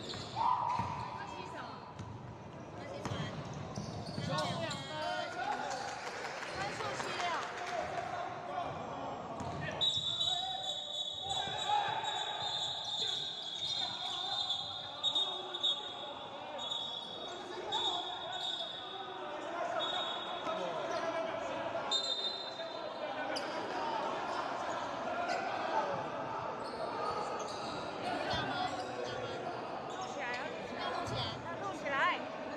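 Basketball bouncing on a hardwood gym floor with players' voices in a large indoor hall. A steady high-pitched tone comes and goes through the middle stretch.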